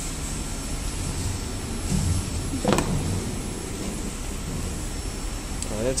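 A steady low hum with a constant background hiss, with a short voice-like sound about halfway through and a voice starting right at the end.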